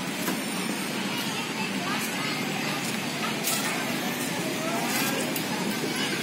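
Steady hum of road traffic with indistinct voices of people chattering in the background.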